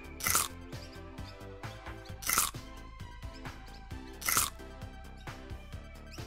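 Cartoon background music with three short crunching sound effects, about two seconds apart.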